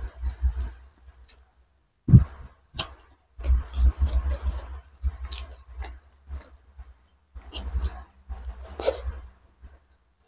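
Close-miked ASMR eating sounds of chicken curry and rice eaten by hand: wet chewing, mouth clicks and squishy smacks in bursts with short pauses, and one sharp thump about two seconds in.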